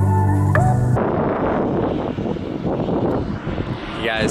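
Background music that cuts off about a second in, followed by a steady rushing noise of wind on the microphone and the rumble of a boat underway on open water.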